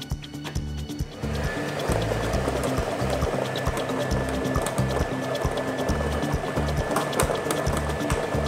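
Plastic lottery balls rattling and clattering as they tumble in the spinning drums of the draw machines, setting in about a second in as the mixing starts. Background music with a steady beat runs underneath.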